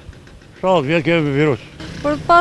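Speech: a voice speaks one short phrase about half a second in, over faint steady low background noise.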